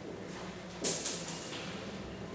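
Marker writing on a whiteboard, with one sudden high-pitched squeak a little under a second in that trails off before the end.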